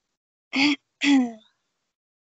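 A woman clearing her throat: two short voiced sounds half a second apart, the second falling in pitch.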